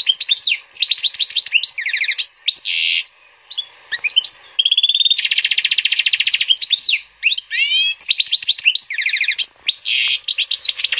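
Goldfinch × canary hybrid (European goldfinch crossed with a canary) singing a long, varied song of fast buzzy trills and quick sweeping notes, with brief pauses about three seconds in and again around seven seconds.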